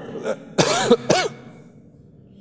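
A man clearing his throat into a microphone: a loud rasping burst about half a second in, followed by a shorter one.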